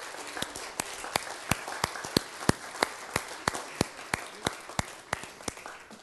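Congregation applauding: many separate hand claps over a general patter, dying away near the end.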